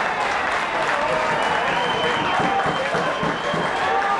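Football crowd cheering and applauding a goal, with shouting voices mixed into the clapping.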